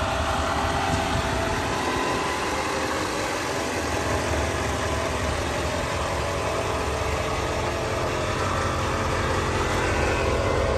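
Chevrolet Kodiak truck's engine idling steadily, running with the back half of its exhaust system removed.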